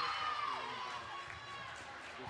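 Volleyball players and spectators cheering and shouting as a point is won, several voices at once, loudest at the start and dying down over the two seconds.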